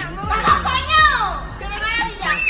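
Young people's high-pitched voices talking, over faint background music.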